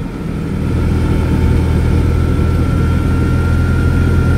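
Invacar three-wheeler driving along, heard from inside its small cabin: a steady engine drone with a thin, high steady whine over it, building slightly in the first second and then holding even.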